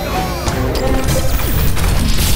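Cartoon action sound effects over energetic background music: several crashing, metallic hits that build in loudness, leading into the whoosh of a robot's transformation sequence.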